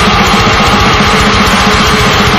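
Loud heavy metal recording: distorted guitars over very rapid drumming, with one high note held through.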